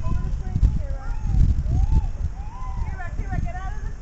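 Children's high voices calling out in short rising-and-falling cries with no clear words, coming thicker toward the end, over uneven low rumbling and thumps.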